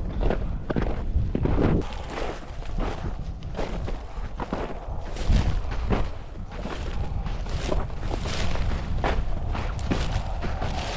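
Footsteps crunching through snow and dry grass at a walking pace, with wind buffeting the microphone.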